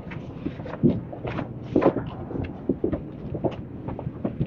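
Footsteps walking along a yacht's teak side deck, an irregular run of soft knocks with brief rustles between them.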